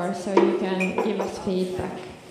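Tableware clinking: three sharp clinks, one with a brief ringing tone, over people talking.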